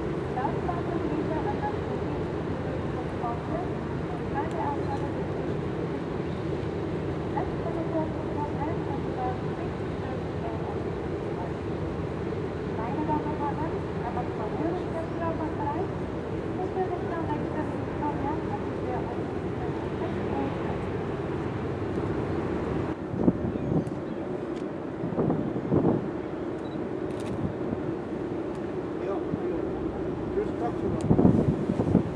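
Steady low hum of a ship heard from its open deck, with indistinct voices of people talking in the background. A few short bumps come near the end.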